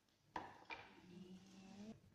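Two sharp knocks of a steel kitchen knife on a wooden cutting board, a third of a second apart, followed by a faint drawn-out tone.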